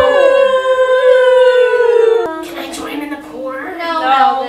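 Several people's voices holding one long drawn-out note together while other voices slide up and down in pitch over it. The note cuts off suddenly about two seconds in, and quieter voices follow.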